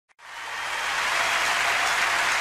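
Audience applause in a large hall, fading in from silence over the first second and then steady.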